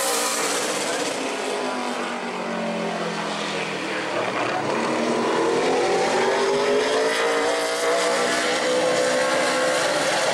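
Super late model stock car's V8 engine running at speed on the oval. Its pitch falls near the start and then rises steadily from about four seconds in as the car accelerates around the track.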